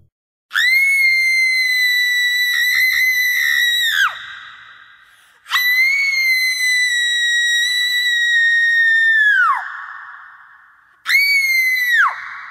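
Cartoon screams: three long, very high-pitched screams, each held on one pitch and then dropping sharply as it cuts off, with a short third one starting near the end.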